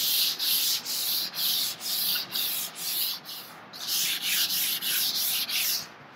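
400-grit sandpaper rubbed by hand over a dried water-based topcoat on a wooden dresser top, in light, even back-and-forth strokes about two or three a second, with a brief pause a little past halfway. This is the light sanding between coats that knocks down the grain raised by the water-based topcoat.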